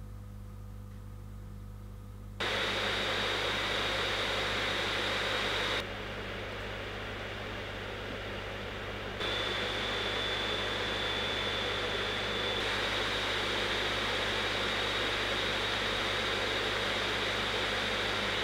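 Razer Blade 15 Advanced gaming laptop's cooling fans heard in a run of short clips: almost silent at idle, then a steady fan whoosh with a faint high whine under load. The level steps up about two seconds in, drops back for a few seconds, then rises again under full CPU/GPU stress, and is loudest near the end with the fans at maximum.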